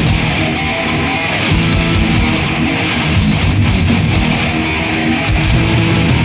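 Death metal band playing live, with loud, distorted electric guitars riffing over bass and drums.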